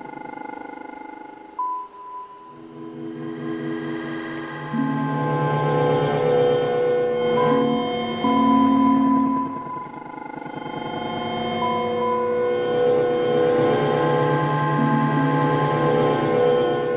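Granular synthesis from the netMUSE software: sequenced sound grains triggered by expanding wavefronts, building a layered texture of sustained synthetic tones. Lower tones join about two and a half seconds in and again near five seconds, and the texture swells louder as it goes on.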